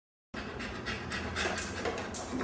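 A dog panting quickly, about four short breaths a second, starting a moment in.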